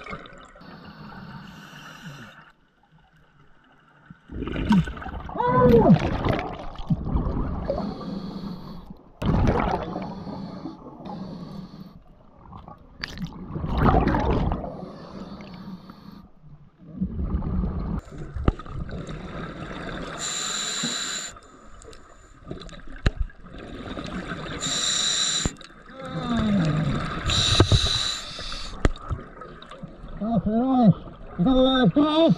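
Scuba diver breathing through a regulator underwater: hissing inhalations, some with a thin whistle, alternating with gurgling bursts of exhaled bubbles, about one breath every four to five seconds.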